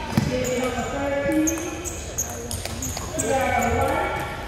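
Table tennis ball ticking off bats and table in a rally, a string of quick sharp clicks about every half second, with people talking in the background.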